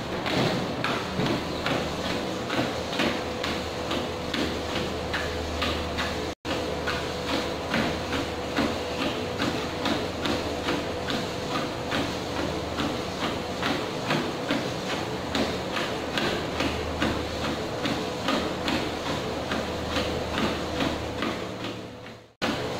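Footfalls on a running treadmill belt, about two steps a second at a walking pace, over the treadmill motor's steady whine and hum. The sound drops out for an instant about six seconds in.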